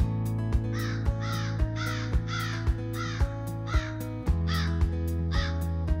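Background music with a steady beat, over which a crow caws about nine times in a row, each caw short and falling in pitch.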